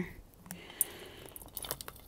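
Clear plastic bag crinkling as it is handled, with a few small clicks in the last half second.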